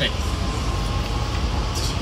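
Running noise inside a moving train carriage: a steady low rumble with an even hiss over it, and a faint steady whine in the middle.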